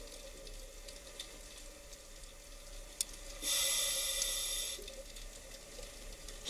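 Quiet, water-like hiss with a faint steady hum. There is a single sharp click about three seconds in, then a louder high hiss for about a second and a half.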